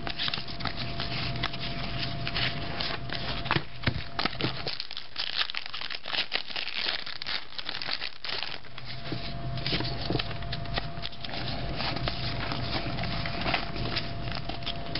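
Trading card pack wrappers crinkling and tearing as football card packs are opened by hand, with the cards handled between the fingers: a dense, continuous run of small crackles and clicks.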